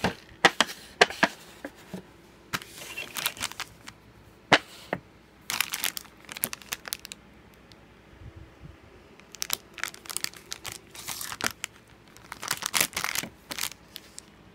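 Plastic cup-noodle packaging handled by hand in irregular bursts of crackling and rustling: the plastic over-lid of the cup rubbing and squeaking against the table, and a foil sachet of tempura crinkling.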